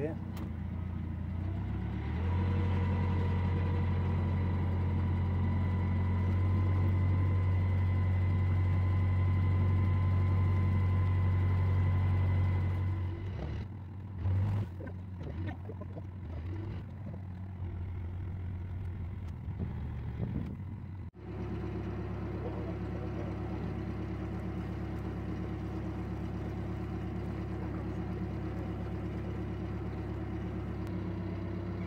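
A narrowboat's diesel engine is run hard and steady while the boat is stuck on the canal bottom, then throttled back about halfway through. After an abrupt break it runs steadily at a lower, even note.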